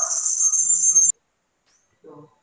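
A steady, high-pitched whine or chirring, with a faint voice underneath, that cuts off abruptly about a second in.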